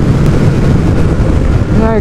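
Steady, loud wind noise on the microphone at road speed, with the 2005 Kawasaki ZX12R's inline-four engine running underneath. A man's voice begins just before the end.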